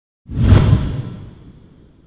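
A whoosh transition sound effect with a deep low rumble, swelling in a quarter second in and fading away over about a second and a half.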